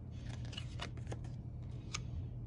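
Thin tarot cards sliding and brushing against each other as the top card is pulled off the deck and laid on the pile: a few short rustling swishes, the last and sharpest near the end, over a steady low hum.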